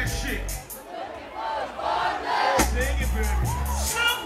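Live R&B concert sound: a bass-heavy beat drops out for about two seconds, leaving the crowd's voices and the singers' vocals, then comes back in.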